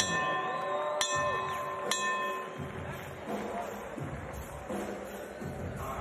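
Three bell strikes about a second apart, each leaving a ringing tone that fades, over arena noise. From about halfway, music with a low beat comes in.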